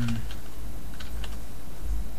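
Typing on a computer keyboard: a few separate key clicks over a steady low hum.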